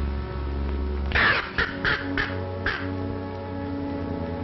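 Dramatic orchestral film score holding low sustained tones, cut across about a second in by five short, harsh, rasping cries in quick succession.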